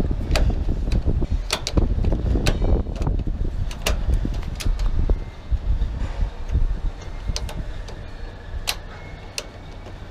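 Irregular metallic clicks and clinks of a curtainside trailer's strap buckle and tensioner mechanism being worked by hand, over a low rumble that eases about halfway through.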